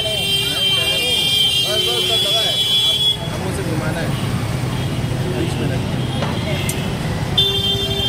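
Busy street ambience: a steady traffic rumble with a long, high-pitched vehicle horn in the first three seconds and again near the end, over distant voices chattering.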